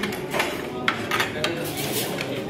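Metal forks and spoons clinking and scraping against ceramic dinner plates at a dining table, with about half a dozen sharp clinks over the two seconds.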